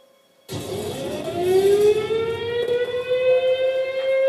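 A siren starts suddenly about half a second in, rises in pitch over a couple of seconds and then holds a steady wail over a rush of noise. It is heard as playback through a laptop's speakers.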